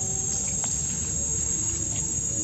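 Steady, high-pitched drone of insects, over a low rumble.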